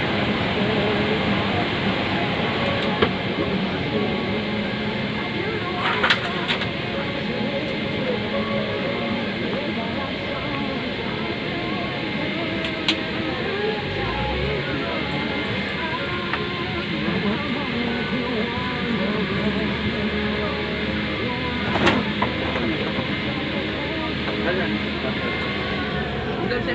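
Airliner cabin noise while passengers get off: a steady ventilation hum under indistinct passenger chatter, with a few sharp clicks and knocks.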